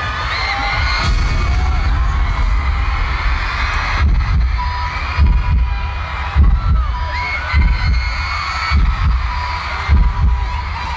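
A live K-pop stage performance plays loudly over arena speakers, heard mostly as a heavy, regular bass beat that thumps harder in the second half. A crowd of fans screams and shrieks over it.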